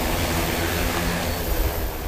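Eight-rotor agricultural spray drone with its propellers running: a loud, steady whir with a low hum under it.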